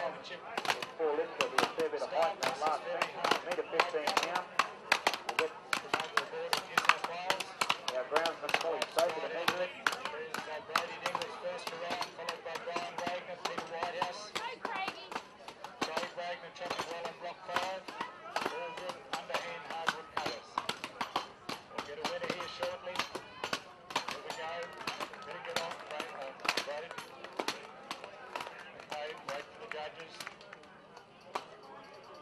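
Several axes chopping into wooden logs in an underhand chop race, the strikes of the different axemen overlapping in an irregular stream of sharp chops, several a second.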